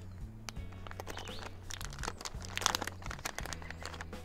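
Plastic soft-bait packet crinkling and crackling in short irregular bursts as it is handled and opened, over background music with low held notes that change in steps.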